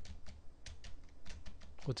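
Typing on a computer keyboard: irregular key clicks, about five a second.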